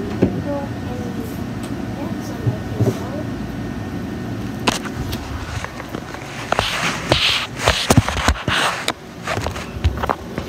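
Handling noise: a steady low rumble, then from about halfway through a run of knocks, clicks and rustling as the recording device is picked up and moved about.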